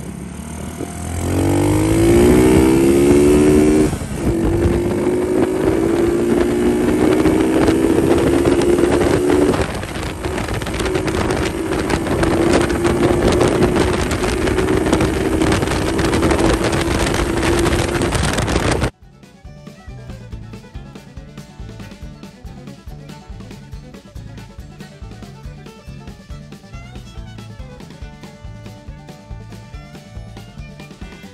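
Honda SL70 minibike with a Lifan 125 cc four-stroke single engine pulling away, its pitch rising through the gears and dropping at two upshifts before holding a steady cruise, over wind noise. About two-thirds of the way through it cuts off suddenly and music with a drum beat takes over.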